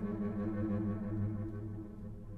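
Cello and wind ensemble playing a soft passage of held low notes that slowly dies away.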